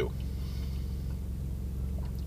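Steady low hum of a car's idling engine, heard from inside the cabin.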